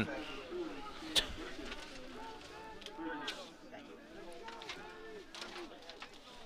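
Faint, distant voices from around the field, several overlapping, with a sharp click about a second in and another near the three-second mark.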